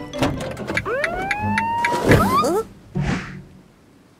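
Cartoon sound effects: a run of clicks and clatter, then a whine that rises steadily for about a second, a loud burst of wobbling, squeaky pitch glides, and a short hiss about three seconds in.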